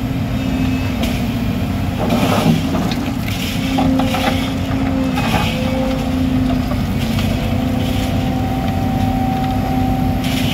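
Volvo tracked excavator's diesel engine running steadily under hydraulic load, with a held whine whose pitch shifts as the boom and bucket move. The bucket scrapes and knocks against broken asphalt and soil in the trench a few times in the first half.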